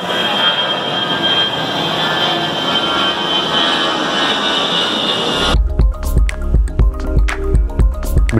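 Jet airliner passing low overhead: a steady engine roar with a high whine. About five and a half seconds in it gives way abruptly to music with a heavy, regular bass beat.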